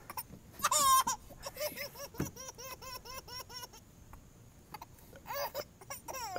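A baby laughing: a loud, high squeal about a second in, then a run of short high-pitched laughs at about four a second, and another laugh near the end.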